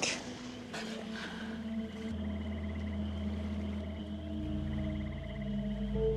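Slow, sustained ambient music score of long held notes, with a deep bass drone coming in about two seconds in and growing deeper later on.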